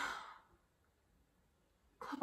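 A woman's short, breathy sigh, exhaled into her hands held over her mouth, at the very start and fading within about half a second.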